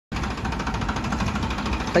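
Farmtrac Powermax 60 tractor's diesel engine running steadily with a fast, even clatter.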